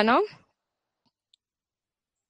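A woman's voice finishing a word, then near silence with two faint clicks about a second in.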